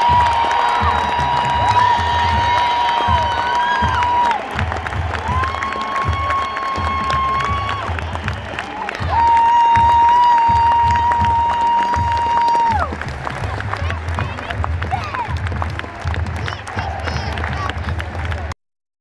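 Stadium PA music with a steady, pulsing low drum beat and three long held high notes, playing over a cheering crowd.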